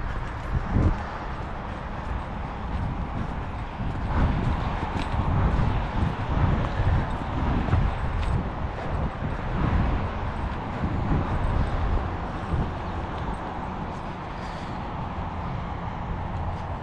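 Footsteps of a hiker walking down a dirt trail strewn with dead leaves, a dull step every second or so, over a steady low rumble of wind on the microphone.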